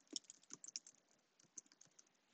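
Faint typing on a computer keyboard: a quick run of soft key clicks in the first second, then a few scattered clicks near the end.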